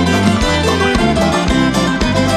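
Viola caipira and acoustic guitar playing an instrumental break of a sertanejo (moda de viola) song: plucked melody notes over a steady rhythm with a low bass line.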